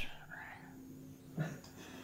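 A quiet pause in talk: a woman's soft breath, then a short murmured vocal sound about one and a half seconds in, over faint room hum.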